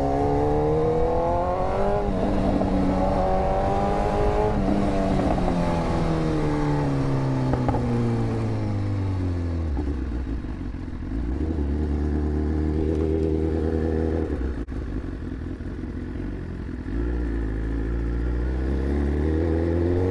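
Superbike's inline-four engine pulling hard through the gears. Its pitch climbs and drops back at each upshift in the first few seconds, then it eases off and winds down to a low rumble while rolling slowly. It revs up again near the end.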